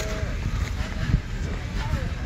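Union Pacific 4014 Big Boy steam locomotive moving slowly, a steady low rumble with a hiss of steam venting from its cylinder cocks. There is one thump about a second in, and short wavering voice sounds near the start and near the end.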